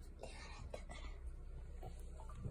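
A soft whisper, a breathy hiss lasting under a second starting just after the start, over a faint steady low hum.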